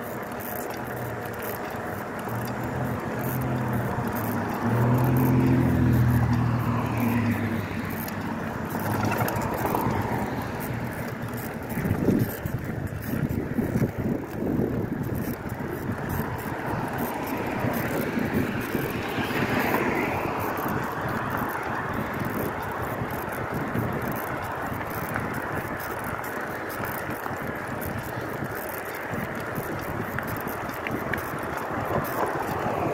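Bicycle riding noise: wind and tyres rolling on pavement, with rattling and knocks from bumps; the sharpest knock comes about twelve seconds in. A low engine hum swells and fades during the first eight seconds.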